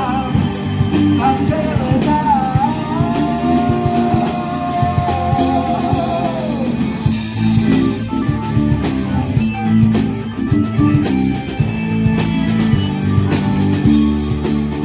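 Live rock band playing with male lead vocals, electric guitars, bass guitar, drum kit and keyboard.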